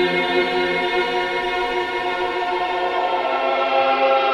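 Choral music: long held voices in sustained chords that shift slowly, the low note dropping out about a second in.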